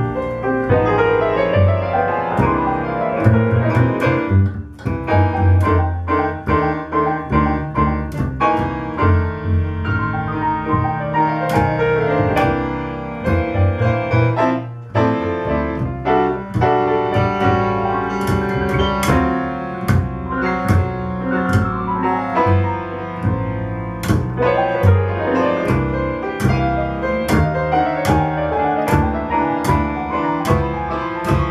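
Grand piano and plucked upright double bass playing a jazz blues instrumental passage, with no singing.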